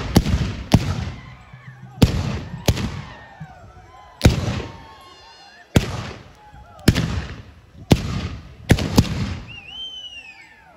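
Guns fired in quick succession, about nine sharp shots spaced irregularly a second or so apart, each trailing off briefly. Voices shout and cry between the shots, with a high rising-and-falling cry near the end.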